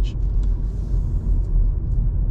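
Steady low rumble of a car's engine and tyres heard from inside the cabin while driving at low speed.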